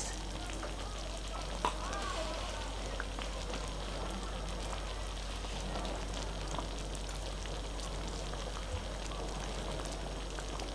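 A thick tomato-and-baked-bean chicken stew simmering in a wide pan, a steady fine crackle and popping of bubbles, with a steady low hum underneath.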